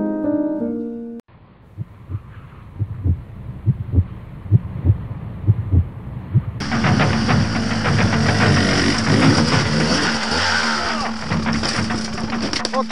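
Background music that cuts off about a second in, followed by a few seconds of dull, irregular thumps. From about halfway a dirt bike's engine runs loudly with a steady low tone and a rattly, noisy edge.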